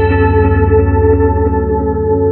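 Instrumental background music: a single held chord with effects and echo, slowly fading over a steady low bass.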